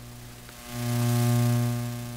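Electrical mains hum with a stack of steady overtones, likely from the church's sound system. It swells louder about a second in, then eases back down.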